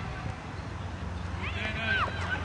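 A short, high-pitched shout near the end, its pitch rising and then falling, over a steady low rumble.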